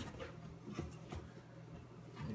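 Faint scraping and a few soft knocks of a cardboard box lid being handled and lifted off.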